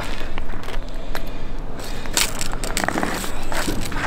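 Crunching and scraping of ice and slush at an ice-fishing hole as a tip-up is lifted out and the line handled, with scattered short clicks and knocks that come thicker in the second half.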